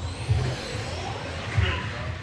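Electric RC touring cars running on an indoor track, with a faint rising motor whine, two low thumps and voices in a large hall.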